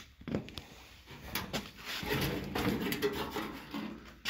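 Handling noise from a loose steel car fender, a 1968–69 Buick Riviera left fender: a knock about a quarter-second in, then irregular clunks and scraping as the sheet metal is moved and turned over.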